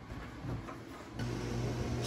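Quiet room tone, then about a second in a steady low electrical hum from a running kitchen appliance starts and holds.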